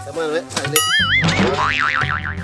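Cartoon-style comic sound effects over background music: a warbling boing that wobbles up and down in pitch starts suddenly about three-quarters of a second in, followed by a zigzagging whistle-like glide.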